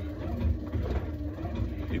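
A steady low rumble, with faint traces of a man's voice.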